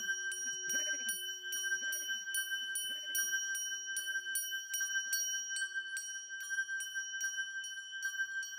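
Crotales struck in a steady pulse of about three strokes a second, each ringing brightly over a sustained high ringing tone. Under them a recorded electronic backing of repeated swooping low tones and a low held note fades away.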